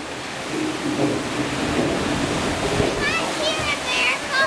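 Steady rushing and splashing of water around a river-rapids ride raft, with a low murmur of voices; high-pitched voices rise over the water near the end.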